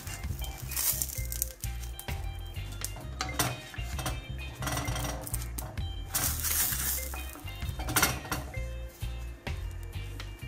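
A wooden spatula scraping and knocking against a cast-iron frying pan, with clinks, as eggplant halves are turned over in the pan, over background music.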